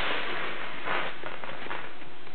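Handling noise from the bass guitar and its packaging being moved about: a steady hiss with short crackling rustles about a second in.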